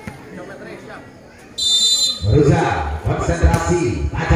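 A referee's whistle blown once, a short shrill blast of about half a second, a little over one and a half seconds in.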